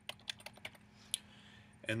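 Computer keyboard typing: a quick run of key clicks as a short name is typed, then one more click a little past the middle.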